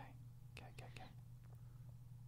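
Near silence: faint studio room tone with a steady low hum and a few faint clicks about half a second to a second in.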